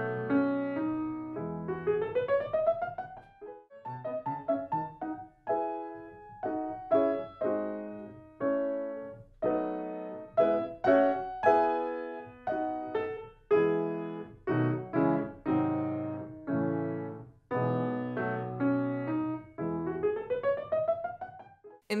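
Grand piano playing a slow classical passage of single notes and chords, with a quick rising run about two seconds in and again near the end, as an example of the sustain pedal used to join notes legato.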